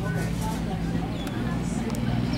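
Indistinct distant voices over a steady low hum, with no clear hoofbeats standing out.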